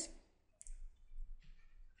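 A few faint clicks and scratches from handwriting on screen with a pointing device, the sharpest about half a second in, over a low steady hum.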